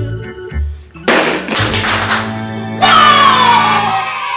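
Upbeat background music, broken about a second in by a sudden loud crash as a toy bowling ball knocks over plastic egg-shaped pins, followed near the end by a long falling tone.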